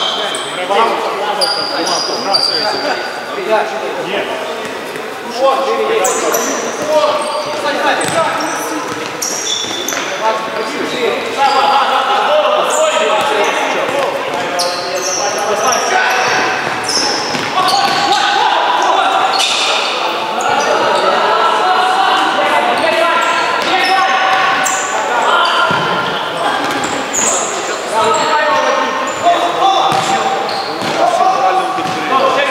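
Live sound of a futsal game in an echoing sports hall: players' shouts and calls mixed with sharp kicks and bounces of the ball on the hard floor.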